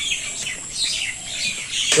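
Small birds chirping and twittering in quick, short calls, over a steady thin high-pitched tone.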